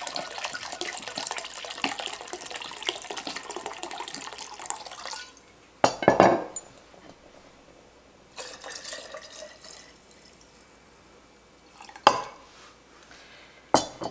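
Bourbon pouring from a bottle into a glass measuring cup for about five seconds, then a sharp glass knock. A shorter pour of bourbon from the measuring cup into a glass jar of vanilla beans follows, about eight seconds in, with another knock of glass set on a wooden board near the end.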